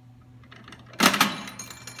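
A 1926 Jennings one-cent Rockaway trade stimulator being played: about a second in comes one sudden loud metallic clatter as the penny drops through the coin-operated mechanism, then brief ringing.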